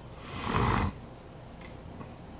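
A man's single heavy, rasping breath, lasting under a second about half a second in.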